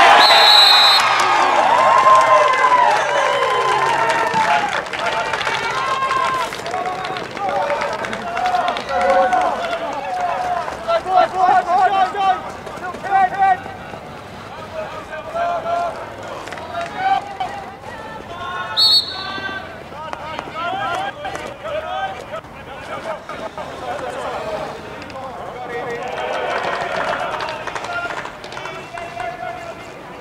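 Players and spectators shouting and cheering, loudest at the start, as a goal goes in at field hockey. A short, high umpire's whistle sounds near the start and again about two-thirds of the way through. Voices carry on more quietly, then swell again near the end.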